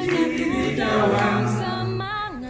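Music: several voices singing together over a long-held low note.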